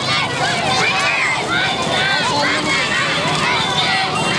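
A crowd of children's voices talking and calling out at once, high-pitched and overlapping, without letup.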